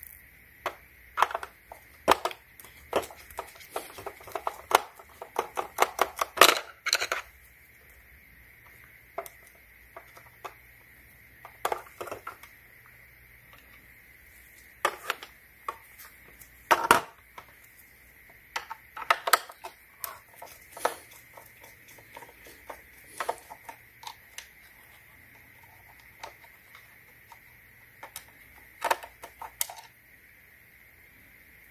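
Irregular clicks and knocks of hard plastic parts and a screwdriver as a Black & Decker Pivot handheld vacuum's plastic housing is unscrewed and taken apart, with a dense run of clicks in the first several seconds and scattered single ones after.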